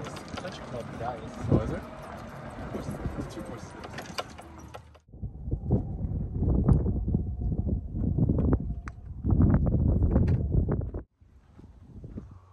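Outdoor microphone noise. A hiss with faint voices runs for about five seconds and cuts off suddenly. Then comes a loud low rumble in uneven surges that stops abruptly about a second before the end.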